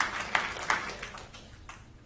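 Scattered applause from a small audience: a few irregular claps that die away within about a second and a half.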